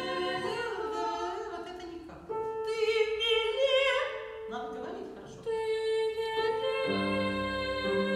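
A 12-year-old boy singing a classical song with grand piano accompaniment, in long held notes with vibrato, broken into three phrases by short breaths. It is a retake of the verse that the coach asked for, working on firmer breath support and clearer diction.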